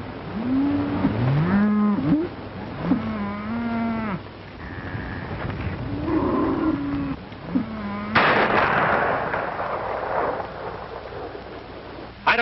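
Cattle lowing: several long moos that slide in pitch, one after another. About eight seconds in comes a sudden loud blast that dies away over roughly two seconds.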